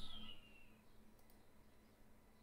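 Quiet room tone with two faint, closely spaced clicks a little past a second in, from a computer's input controls being worked.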